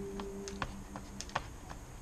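Jump rope ticking against a concrete patio in a run of light, fairly even clicks as it passes under the jumper's feet. Background music stops about half a second in.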